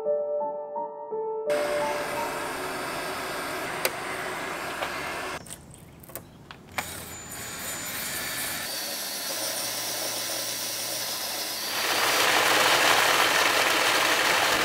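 Piano music stops about a second and a half in. Then a cordless drill spins a rubber eraser wheel against painted bodywork to strip off a stuck-on badge, a steady rubbing hiss with a low motor hum. Near the end a louder, even hiss of heavy rain on the car.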